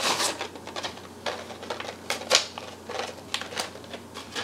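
Plastic packaging of metal duckbill hair clips being handled and opened: crinkling and clicking in a string of short bursts.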